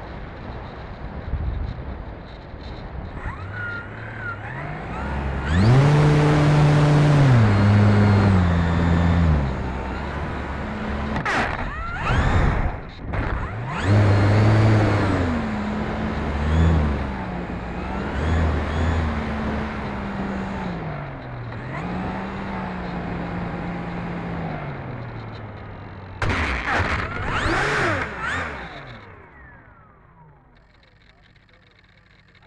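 Onboard sound of an E-flite Turbo Timber's brushless electric motor and propeller whining under a rush of wind, its pitch stepping up and down with throttle changes. Near the end the sound falls away as the motor is throttled back on touchdown.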